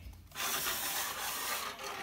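A steady scraping rasp for about a second and a half: a cut length of steel band saw blade being handled and drawn along, its teeth and edge rubbing.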